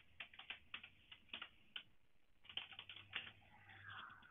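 Faint computer keyboard keystrokes: irregular typing in short runs, with a brief pause about halfway through.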